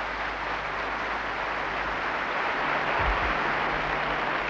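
A large audience applauding, a steady even clapping that swells slightly.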